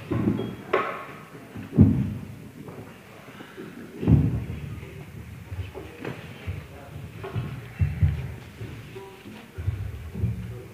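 A lull between tunes by a folk band: scattered dull thuds and knocks, about half a dozen loud ones spread irregularly, with faint snatches of instrument notes and voices between them.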